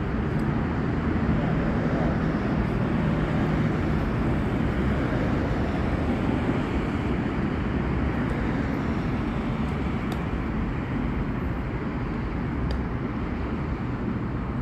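Road traffic: a steady rumble of passing vehicles, with a low engine hum that is strongest in the first several seconds and eases slowly after.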